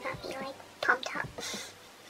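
Only speech: a woman speaking softly, close to a whisper, with two short breathy hisses.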